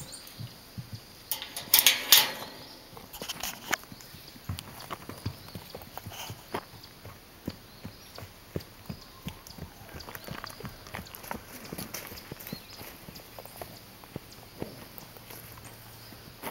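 A horse's hooves striking soft grassy ground as it walks, a scatter of light uneven thuds. A short, loud rush of noise comes about two seconds in.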